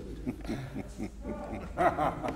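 Men laughing, the laughter growing louder near the end.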